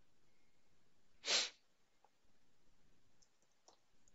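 A person's single short, sharp breath noise about a second in, the loudest sound here, followed by a few faint computer keyboard clicks.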